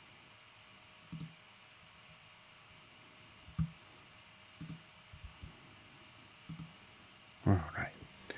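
A few short clicks from working a computer, several coming in quick pairs, spread through a quiet room. A voice starts near the end.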